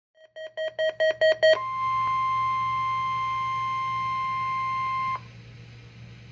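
Weather alert radio sounding an alert: six quick electronic beeps, about five a second, then a steady alert tone of about 1 kHz held for about three and a half seconds that cuts off suddenly. This is a NOAA Weather Radio Required Weekly Test being received.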